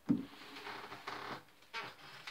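Paper rustling as a folded card note is handled and unfolded: a sharp crinkle at the start, rustling for over a second, then another brief crinkle near the end.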